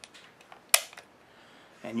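Magazine pushed into a Glock 27 pistol's grip, seating with one sharp click about three-quarters of a second in, with a few faint handling clicks around it.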